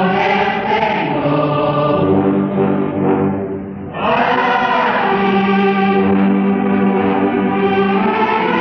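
Choir singing a hymn in long held chords, recorded on cassette tape. The singing thins briefly just before the middle, then a new phrase starts.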